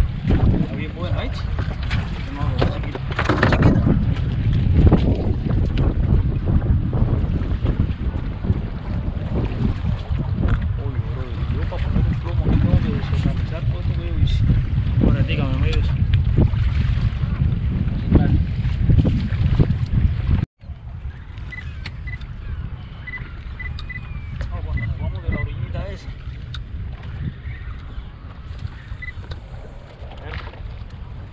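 Strong wind buffeting the microphone on an open boat over choppy water, a loud, steady low rumble. It cuts out briefly about two-thirds of the way through, then carries on softer.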